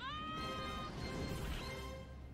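A high, squeaky cartoon voice lets out one long cry that rises at first and then holds, over film music.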